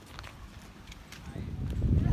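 Footsteps on hard ground, a few separate sharp steps, with a low rumble, like wind on the microphone, building up near the end.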